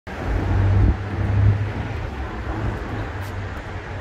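Street traffic noise, with a vehicle's low rumble loudest in the first second and a half, then easing to a steady traffic hum.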